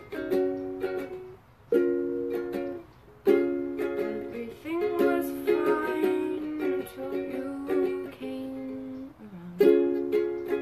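Ukulele strummed in a slow chord pattern, with short breaks between chords about a second and a half and three seconds in. A young female voice sings softly over the chords about halfway through.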